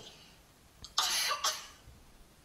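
A woman's short, breathy vocal burst about a second in, in two quick pushes, like a brief cough.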